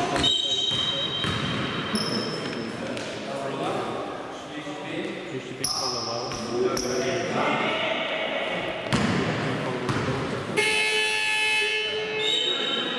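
Basketball bouncing on a sports-hall floor during play, with players' voices and several short high-pitched squeaks or tones, echoing in a large gym.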